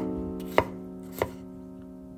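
Chef's knife chopping bell pepper on a wooden cutting board: three sharp chops about half a second apart, the first right at the start.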